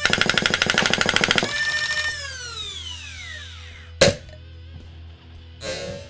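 A 3D-printed motorized foam dart blaster firing full-auto: a rapid stream of dart shots over a motor whine for about a second and a half, then the motors winding down in a falling whine. A single sharp, loud click follows about four seconds in.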